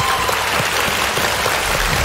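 Studio audience and contestants applauding, a steady patter of many hands clapping. A held musical tone from the show's music dies away just after the start.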